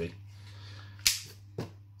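Magazine of an EMG STI Combat Master hi-capa airsoft pistol snapping home in the grip: one sharp positive click about a second in, followed by a softer click.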